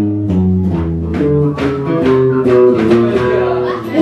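Blues guitar break on a PRS electric guitar with a piezo pickup, amplified: a run of single picked notes stepping up and down over sustained low bass notes, with no singing until a held vocal note comes in at the very end.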